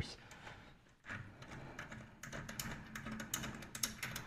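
Faint, irregular light clicks and taps, coming more thickly in the second half.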